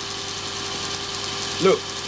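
Electric grinder motor on a speed controller spinning a printer stepper motor used as a generator, running steadily: an even mechanical whir with one constant tone.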